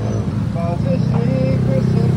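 A voice holding and stepping between sung notes, as in a song, over steady street traffic noise.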